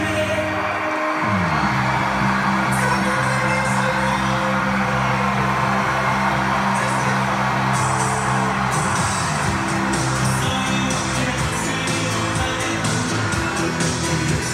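Pop music with a male lead vocal from a televised halftime show, heard through the room's speakers, with a steady bass line that drops out briefly about a second in.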